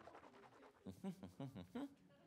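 Faint, brief voice sounds from about a second in, over quiet room tone.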